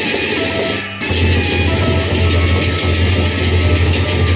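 Lombok gendang beleq gamelan ensemble playing: large double-headed barrel drums beating under a dense wash of clashing hand cymbals. There is a brief break about a second in, after which the deep drums come in louder.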